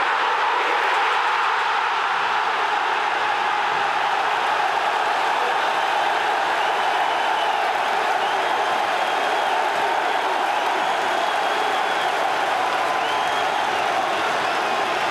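Football stadium crowd noise: a steady, dense sound of many voices at once, with no single voice standing out.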